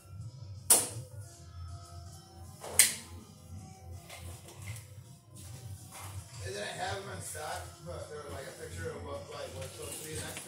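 Two sharp knocks, about a second in and again near three seconds, from a metal LED ceiling light fixture being handled and set down. Background music with singing runs underneath.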